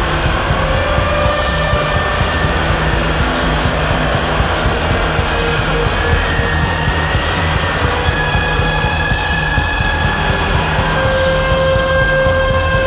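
Loud, dense free-improvised noise rock: a continuous wall of sound with a heavy low end, and held high tones that drift slightly in pitch over it.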